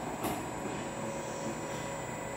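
ARX Omni resistance machine's electric motor running steadily under load, a low mechanical hum with faint steady tones, as it drives the pull-down handle against the lifter's pull.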